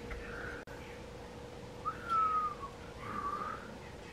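A few soft whistled notes: the clearest, about two seconds in, slides downward, and a softer one follows a second later. A faint steady hum runs underneath.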